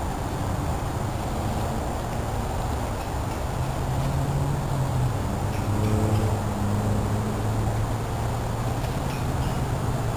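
A steady rushing background noise with a low droning hum that comes in about three and a half seconds in and stays to the end, loudest near the middle.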